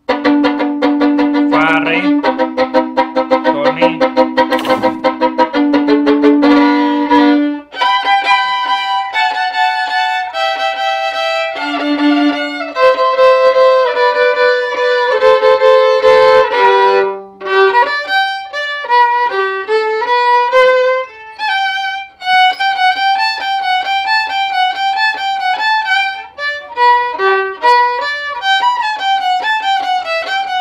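Solo violin played in huasteco (huapango) style: quick bowed double stops over a held low note, then a melody in double stops on the A and D strings, with a few short breaks between phrases.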